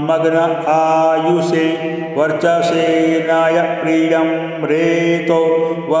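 A man's voice chanting a Vedic Sanskrit mantra in long held notes that step between a few pitches.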